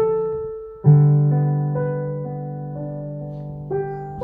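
Background piano music: a chord at the start, a louder one about a second in, and another near the end, each ringing and slowly fading.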